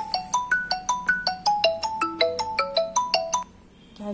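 A phone ringtone: a quick melody of short plinked notes, several a second, that stops abruptly about three and a half seconds in.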